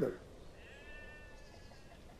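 A faint animal call in the background, one drawn-out cry of about a second whose pitch rises slightly and falls back, over a quiet background, just after a man's line of dialogue ends.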